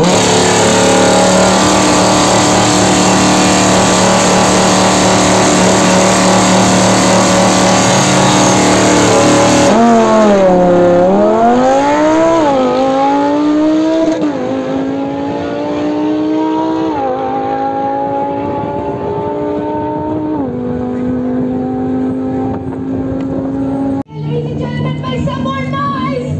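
Lamborghini Huracán's V10 held at steady high revs for about ten seconds, then abruptly changing to the engine accelerating hard, its pitch climbing and dropping sharply at each of four upshifts.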